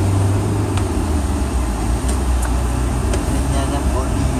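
Steady low rumble of a car's engine and road noise heard from inside the cabin while driving through city traffic.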